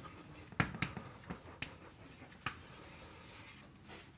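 Chalk writing on a blackboard: a few sharp taps of the chalk as letters are written, then a longer steady stroke of about a second near the end as a line is drawn.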